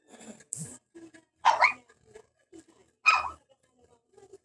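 A dog barking, with two loud barks about a second and a half apart.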